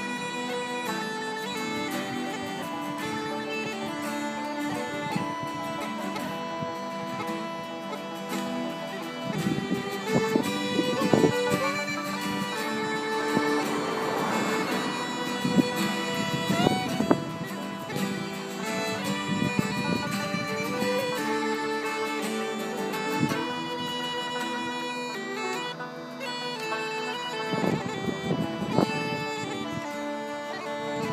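Instrumental break of a slow Irish ballad played on uilleann pipes with fiddle and acoustic guitar, the pipes' held notes sustained under the melody.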